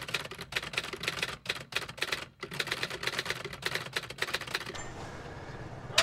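Typewriter sound effect: a rapid run of key clicks as text is typed out letter by letter, stopping a little before the end.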